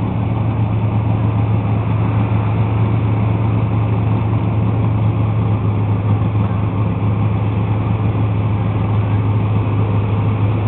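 Pickup truck engine running hard at steady revs while the truck's tyres spin against the pull sled. The sound is loud and even, with no rise or fall in pitch.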